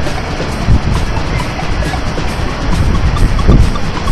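Wind buffeting the camcorder microphone: an uneven, gusty low rumble.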